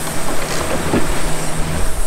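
Boat under way on an outboard motor: a steady low engine hum under the loud rush of the wake and wind on the microphone.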